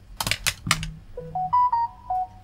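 A few sharp clicks, then a short tune of pitched notes that rises and then falls.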